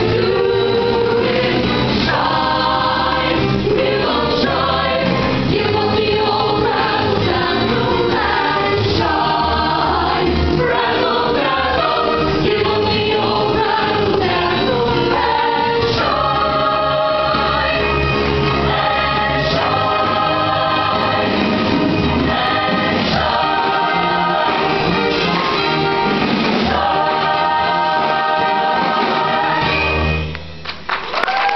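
High school show choir singing an upbeat number in full voice over instrumental backing with a steady bass line.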